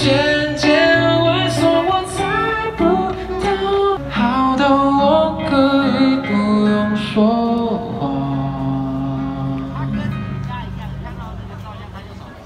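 Live pop concert music heard from within the audience: a band plays a melodic passage without lyrics over a held bass line, and it grows steadily quieter over the last few seconds.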